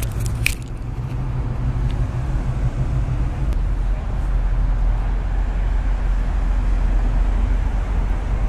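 Steady low rumble of street traffic, with a low hum that stops about three and a half seconds in. A couple of sharp clicks just after the start.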